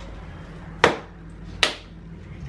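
Two sharp taps a little under a second apart from a small jar of toasted sesame seeds being knocked while the seeds are sprinkled over a plated dish, each with a brief ring.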